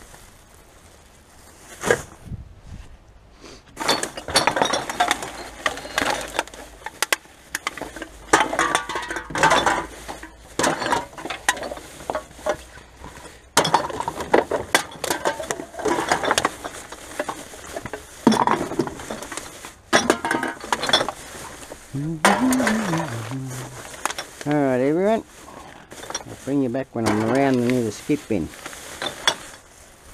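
Empty glass bottles and aluminium cans clinking and rattling against each other as gloved hands dig through a recycling bin full of them, with plastic bags rustling.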